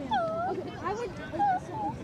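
Indistinct voices of children and adults calling out across an open playing field, with one high, drawn-out call that dips and rises near the start.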